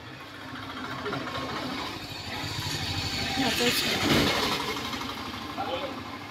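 A motor vehicle passes by with an engine rumble. It grows louder, is loudest about four seconds in, and fades away near the end.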